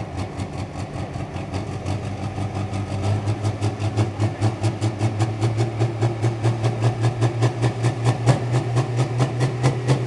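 Pro Stock pulling tractor's diesel engine idling at the start line with an even, rapid pulse, about six beats a second. It grows somewhat louder about three seconds in.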